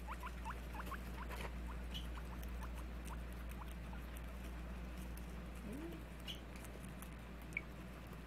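Guinea pigs squeaking and eating a green leaf: a quick run of short squeaks, about four or five a second, in the first couple of seconds, then scattered small crunches and rustles in the hay over a steady low hum.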